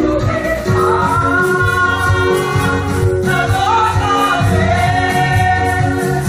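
A group of women singing a gospel praise and worship song together into microphones, over amplified backing music with a bass line and a steady beat.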